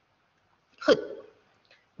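A woman's voice saying one short word, "Good," about a second in, falling in pitch.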